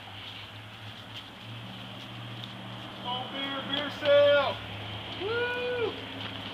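A person's voice calls out three short wordless times in the second half, the loudest about four seconds in and the last rising and falling in pitch, over a steady low hum.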